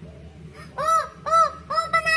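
A woman's high-pitched excited squeals: three short rising-and-falling cries a little under a second in, then a long held cry starting near the end, loud, an excited reaction while scanning a winners list.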